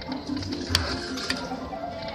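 Lightning Link pokie machine spinning its reels: the machine's electronic spin jingle with ticking reel-stop clicks. There is a sharper click about three quarters of a second in and another a little past a second.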